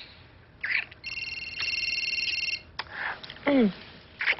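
An electronic telephone ring: a warbling trill of several high tones, lasting about a second and a half and starting about a second in. Around it are soft wet kissing sounds and breaths, and near the end a short vocal murmur that falls in pitch.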